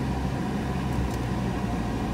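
Steady low engine and road hum heard inside a car's cabin as the car moves slowly.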